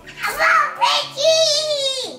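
A young child's voice singing, with short sung sounds and then one long, wavering high note held near the end.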